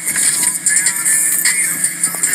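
Soft-touch automatic car wash heard from inside the car: water spray and cloth brushes slapping and rubbing on the body and windshield, a steady hiss broken by many small knocks.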